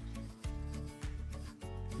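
Background music with a steady bass line, the notes changing about twice a second.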